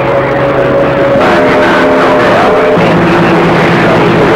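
CB radio receiver picking up a strong signal: a steady hiss of static under held tones that change pitch about a second in and again near three seconds, with no voice on the channel.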